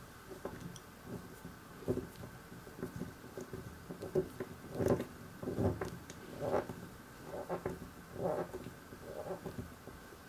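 Small screwdriver turning a tiny screw into a plastic model engine block, with irregular clicks, scrapes and knocks of the hands handling the plastic parts.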